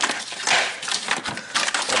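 Club Car Precedent golf cart's charger wiring harness being pulled through the frame by hand: irregular scraping and rustling of the sheathed wires against the body panels.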